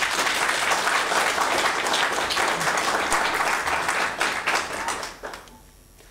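Audience applauding: a dense patter of many hands clapping for about five seconds, dying away near the end.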